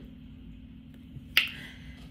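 A single sharp snap about one and a half seconds in, over a faint steady low hum.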